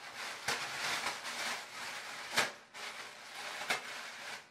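Thin plastic shower cap crinkling and rustling as it is stretched and pulled down over hair, with a few sharper crackles, the loudest about two and a half seconds in.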